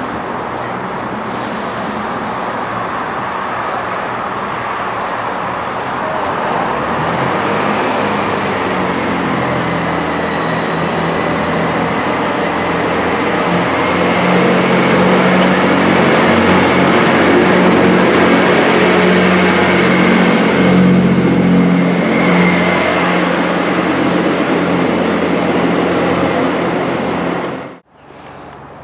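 Class 158 diesel multiple unit drawing into the platform, its underfloor diesel engines running louder as it comes alongside, with a faint high whine over the engine note. The sound cuts off abruptly just before the end.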